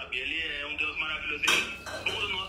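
Faint, muffled talk from a video call on a phone's speaker, with one sharp clink about one and a half seconds in.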